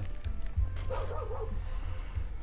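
Soft background music over a low steady hum, with a short wavering whine about a second in.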